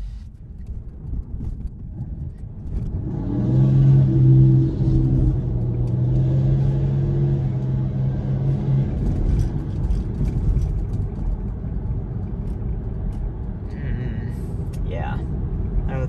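Road and tyre noise inside a Tesla's cabin as the electric car pulls away from a stop and gathers speed, growing louder over the first few seconds. A steady low hum with a few overtones sits under it for several seconds after the car starts moving.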